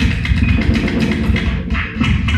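Experimental turntablism: a record manipulated by hand on a turntable and layered through a looper, giving a dense, continuous texture with a heavy low end and a brighter patch near the end.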